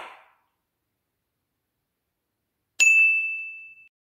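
A single bright, bell-like ding about three seconds in: one sharp strike with a clear high tone that rings out and fades over about a second.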